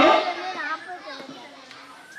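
A man's amplified voice trails off, leaving faint chatter of children's voices in the background.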